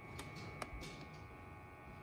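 Quiet background with a faint steady high whine and two faint clicks within the first second.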